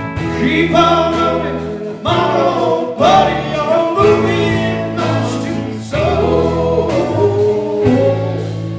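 Live band playing a song, with several voices singing over electric guitars, bass, keyboards and drums.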